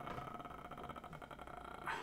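A man's long, drawn-out hesitation "uhhh", held on one steady pitch, ending in a short louder breathy sound.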